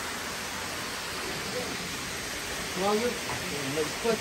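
A steady, even hiss with a faint voice speaking briefly about three seconds in.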